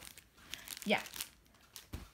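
Plastic sticker-pack sleeves crinkling as they are handled, in short rustles.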